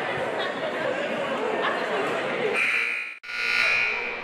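Crowd voices in a gym, then the basketball scoreboard buzzer sounds with a steady high tone about two and a half seconds in; it breaks off for an instant and sounds again, loudest, near the end.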